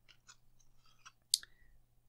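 Faint handling noise of trading cards being turned over in the hands: soft scattered ticks and one sharp click a little past halfway, over a faint low hum.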